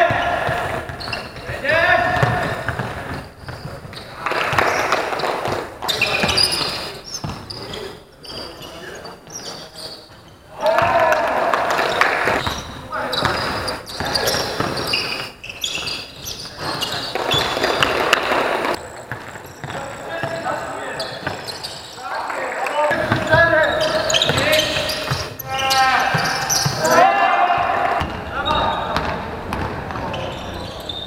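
Live sound of a basketball game in a sports hall: the ball bouncing on the court while players shout and call out indistinctly.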